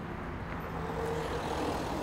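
Low, steady street-traffic rumble with a faint engine hum in the middle, growing slightly louder as a vehicle runs nearby.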